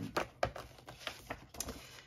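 A hardcover book being opened and its paper pages turned by hand: a quick run of light paper flicks and taps.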